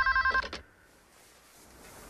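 Corded desk telephone ringing with a rapid electronic warble between two pitches, cut off about half a second in, then near silence.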